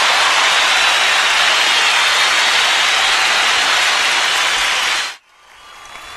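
Loud steady hiss of static noise, with a faint whistle wavering high above it, cut off suddenly about five seconds in.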